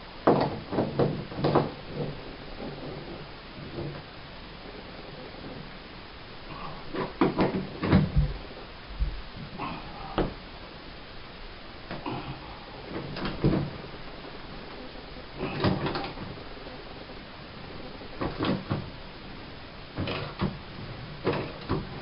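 Ratchet wrench turning a Master Extractor drain-removal tool set in a metal bathtub drain. Short bursts of clicking and metal clanks come every few seconds, with a couple of dull thuds about eight seconds in, as the old drain is worked loose and unscrewed.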